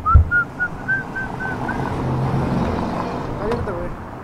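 A few heavy knocks of the camera being handled, then a quick run of about seven short high beeps, about four a second, that stops after nearly two seconds.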